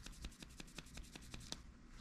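Small brush scrubbing back and forth inside the chuck of a Brasseler Forza electric high-speed dental handpiece: a quick run of faint scratches, about ten a second, that stops about one and a half seconds in. It is scouring out built-up lubricant and debris that keep the bur from being held properly.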